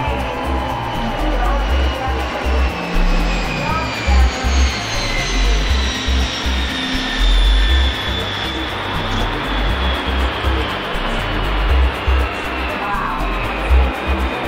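Boeing 747 Shuttle Carrier Aircraft's four jet engines running as it flies low past and away: a steady roar with a high whine that slides slowly down in pitch as the jet recedes.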